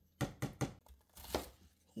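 Light kitchen knocks and clicks: several quick, sharp taps in the first half second and a few more about a second and a quarter in, from a glass pot lid and a knife on a cutting board.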